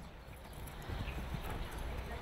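Hooves of a mare being led at a walk and her foal trotting beside her on grass and sand, a run of soft, irregular thuds starting about a second in.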